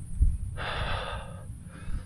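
A person's breathing, out of breath: one long breathy rush of air lasting about a second in the middle, and a weaker one near the end, after a soft low thump at the start.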